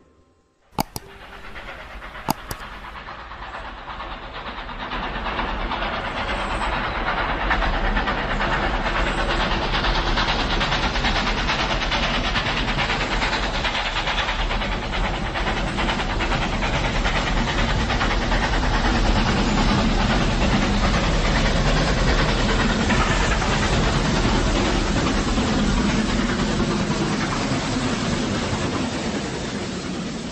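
Train running on rails, its rumble swelling over the first several seconds to a steady loud noise and starting to fade near the end, after two sharp clicks at the start.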